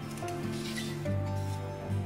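Soft background music with steady sustained notes, and a brief rustle of paper-backed fusible web being handled about half a second in.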